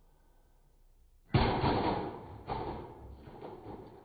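A sudden loud crash about a second in as objects land on a flat-panel monitor lying on a tile floor, a second knock about a second later, then clattering that dies away.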